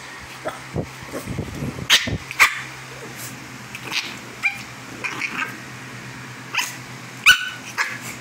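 A small dog yipping and barking in short, sharp calls, about half a dozen spread through, the loudest a couple of seconds in and near the end.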